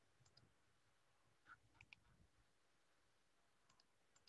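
Near silence, broken by three faint computer-mouse clicks about one and a half to two seconds in.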